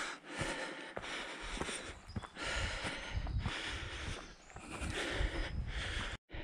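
A hiker breathing hard while climbing a steep path, breaths rising and falling about once a second, with light clicking footsteps on the trail.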